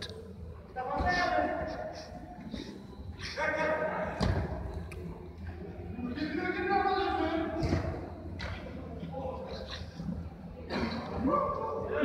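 Players' distant shouts echoing in a large indoor sports hall, with a few dull thuds of a football being kicked.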